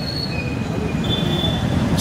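A low rumbling background noise with faint, steady high-pitched whines coming and going over it, and no speech.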